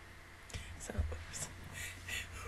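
Faint breathy puffs and whisper-like sounds from a person close to the microphone, a stifled laugh starting about half a second in.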